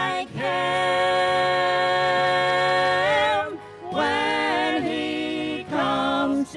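Mixed quartet of two men and two women singing a gospel song in harmony through handheld microphones, holding one long chord for about three seconds, then breaking briefly and starting a new phrase.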